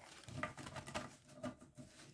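A deck of tarot cards being shuffled by hand, faint soft flicks of cards slipping off the pack with a few small clicks.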